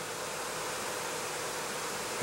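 Steady background hiss with a faint steady hum, with no distinct event standing out.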